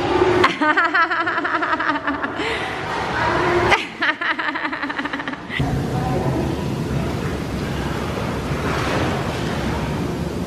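Voices and laughter in the first half, then, from about halfway, the steady rushing noise of hot tub jets churning the water.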